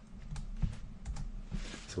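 Keys on a Samsung netbook's keyboard tapped several times in an uneven run of light clicks, typing in a login password.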